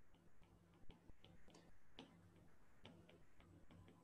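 Faint, irregular clicks of a stylus tip tapping on a tablet's glass screen during handwriting, a few per second.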